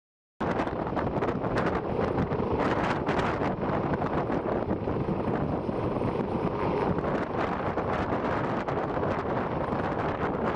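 Heavy wind rushing across the microphone, mixed with the running noise of an MH-139A Grey Wolf helicopter. It cuts in suddenly just after the start and stays dense and steady, with irregular gusty surges.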